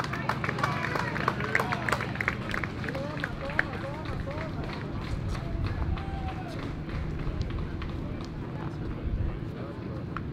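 Indistinct voices of players calling out and chattering around a baseball field, with scattered sharp clicks in the first few seconds over a steady low background hum.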